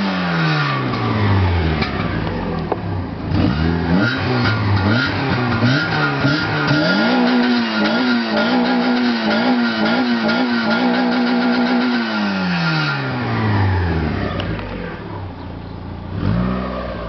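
Citroën Saxo VTS 1.6 16V four-cylinder petrol engine being free-revved while the car stands still. It falls from a high rev toward idle at the start and gives a run of quick blips. Then it is held high for about five seconds with a slight wobble, and drops back to idle near the end.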